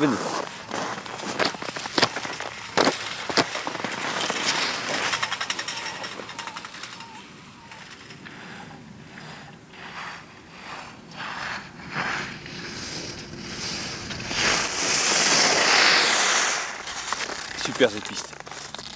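A few sharp clicks as ski boots snap into bindings. Then alpine skis scrape and hiss over packed snow through a series of turns, loudest in a long carved turn that sprays snow near the end.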